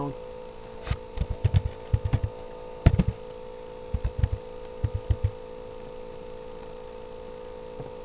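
Computer keyboard keystrokes in short clusters, a dozen or so light knocks over the first five seconds, over a steady electrical hum.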